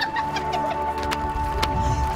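Background film music of steady held tones, with scattered sharp clicks and short wavering chirps over it.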